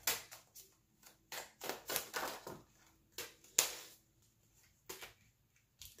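Tarot cards being drawn from the deck and laid down: a scattered series of short card snaps, flicks and slides, the sharpest just past the middle.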